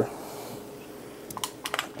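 Faint steady hiss, then a quick cluster of light sharp clicks and taps near the end.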